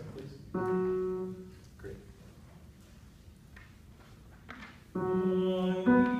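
A piano sounds a single held note about half a second in, giving the starting pitch, and it fades after about a second. Near the end another note sounds, and the choir's tenors come in singing just before the end.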